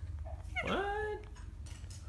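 A parrot giving one drawn-out call that rises in pitch and then holds, about half a second long, starting just over half a second in.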